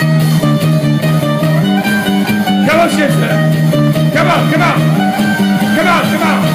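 Live ukulele band with bass and drums playing an instrumental groove at a steady pace. Voices shout out over it about three times.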